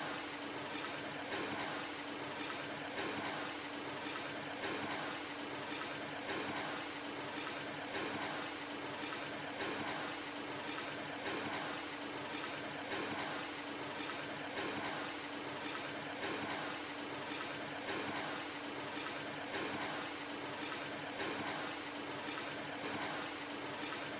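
Steady hiss with a low hum underneath and faint swells in level every second or so.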